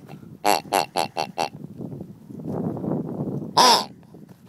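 Latex squeeze dog toys with grunter voices: five quick grunts about a quarter second apart, then after a soft stretch of rustling noise, one longer, louder grunt near the end.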